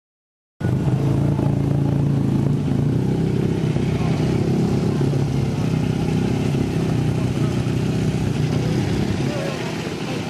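Motorcycle engine running steadily at idle, with a strong low hum. It starts abruptly about half a second in and eases slightly near the end.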